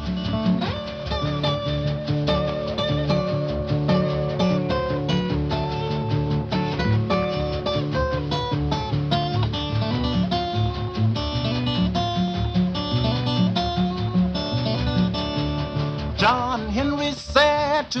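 Acoustic guitar playing an instrumental break in a folk-blues ballad: a steady run of picked notes over a repeating bass line. A man's singing voice comes back near the end.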